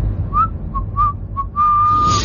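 Someone whistling a tune: four short, clipped notes, the first sliding up, then one long held note near the end, over a steady low rumble.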